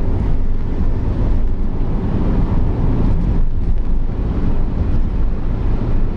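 Steady in-cabin noise of an Audi A6 2.8 V6 petrol car cruising: low engine and tyre drone with wind rushing past.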